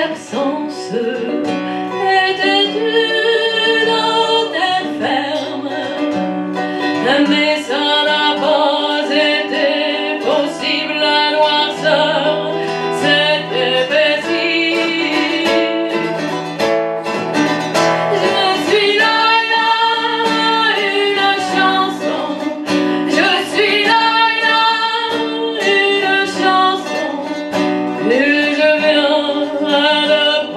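A woman singing a song and accompanying herself on acoustic guitar, with the plucked guitar running under her vocal phrases.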